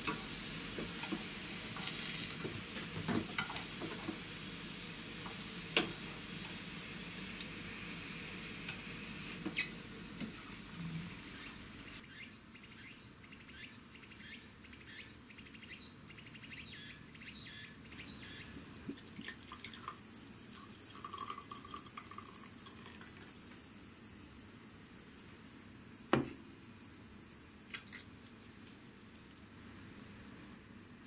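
Vegetables frying in a pan: a steady sizzle with scattered pops. The sound changes abruptly about twelve and eighteen seconds in.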